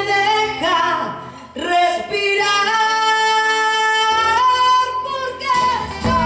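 Woman singing a long held note, stepping up in pitch near the end, over acoustic guitar and electric bass.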